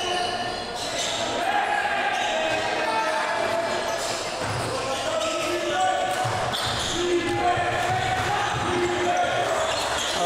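Basketball being played on a hardwood gym floor: short, high sneaker squeaks come again and again, and the ball bounces, all echoing in the hall.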